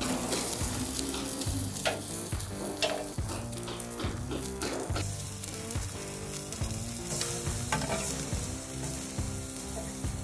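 Two thick New York strip steaks sizzling steadily on a hot charcoal kamado grill during a high-heat sear at around 400°F, with fat dripping into the flames.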